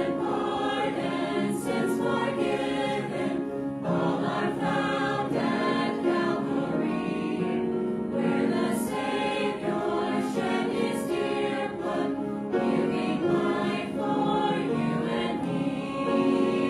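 Church choir of men's and women's voices singing together.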